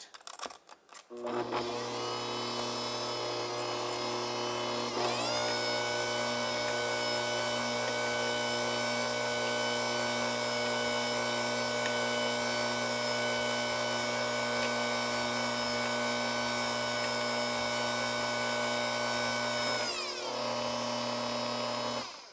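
Bosch Compact Kitchen Machine's electric motor and beaters mixing milk into chocolate cake batter at low speed. The motor starts about a second in, its whine rises in pitch about five seconds in and then holds steady, falls in pitch near the end and stops.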